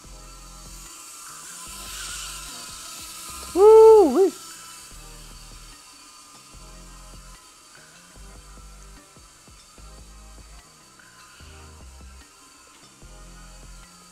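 Tiny whoop drone's small brushless motors and propellers whining faintly and steadily as it flies indoors, under background music with a steady low beat. About four seconds in comes a loud, brief pitched sound that rises and falls twice.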